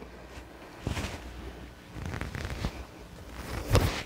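Rustling and shuffling of a person moving about close to the microphone, with a few soft knocks, as a dropped card is picked up. A sharper knock comes near the end.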